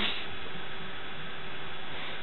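Steady hiss with a faint, steady hum from the amplified sound system, with no voice over it.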